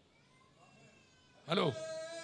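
A pause, then about a second and a half in a man's amplified voice over a microphone says one drawn-out word, its pitch dropping and then held on one note.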